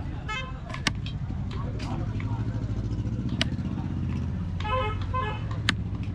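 A knife chopping fish on a wooden stump block gives a few sharp knocks, about a second in, past three seconds and near the end. Under them a motor vehicle engine runs with a low, pulsing rumble. Short horn toots sound early on and again past halfway.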